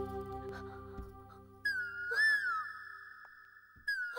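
Film background score: a sustained chord fades away over the first second and a half. Then a high solo melody line enters on a long held note that swoops up and back down, stops briefly, and comes back in near the end.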